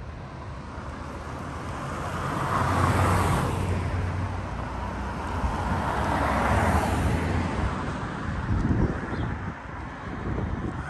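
Two cars passing close by on the road, their tyre and engine noise swelling and fading. The first passes about three seconds in, and the second, a Mercedes-Benz SUV, around six to seven seconds in.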